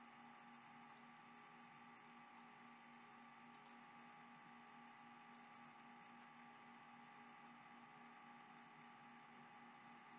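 Near silence: room tone of steady low hiss and faint electrical hum.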